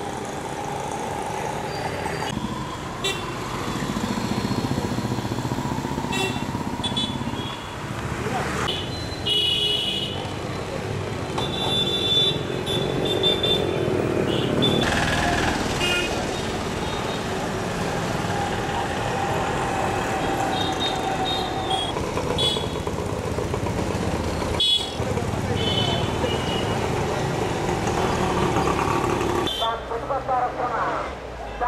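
Busy town street traffic: motorcycle and auto-rickshaw engines running, with short horn toots sounding again and again, over a hubbub of voices.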